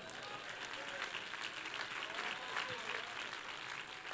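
Light applause from a church congregation, with scattered voices calling out in the background.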